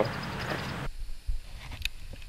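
Outdoor background hiss that drops off abruptly about a second in. After that come a few light clicks and low knocks of handling noise as a baitcasting rod and reel is held.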